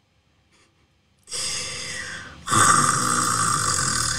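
After about a second of near silence, a woman draws an audible breath in, then lets out a long, louder sigh.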